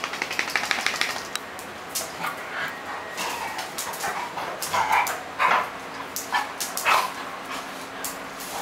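A dog giving a series of short yips and whines as it plays with another dog, the loudest about five and seven seconds in. A quick run of clicks comes in the first second.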